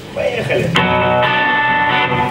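Electric guitar chord struck about three-quarters of a second in and left ringing steadily, after a few words spoken into the microphone.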